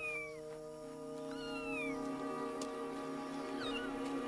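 A leopard cub giving three short, high, falling mews, at the start, about a second and a half in and near the end. Soft sustained orchestral chords are held underneath.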